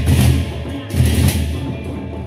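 Gendang beleq ensemble playing: large Sasak double-headed barrel drums beaten with sticks, with clashing hand cymbals. Deep drum strokes land about a second apart, each with a bright cymbal clash.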